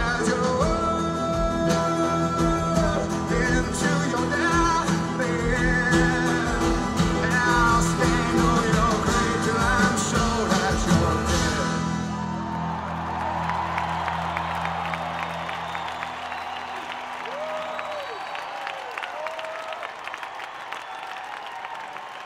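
Live acoustic band with a male singer playing the final bars of a song. About twelve seconds in the playing stops, a last chord rings and fades, and the audience applauds and cheers.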